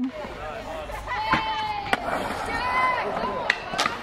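Long drawn-out whooping shouts of celebration, with a few sharp knocks on the skatepark concrete, the loudest near the end.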